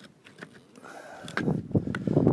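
Clay roof tiles scraping and knocking as a tile is worked into place by hand. It is quiet at first, then a rough, irregular scraping starts about a second and a half in and gets louder.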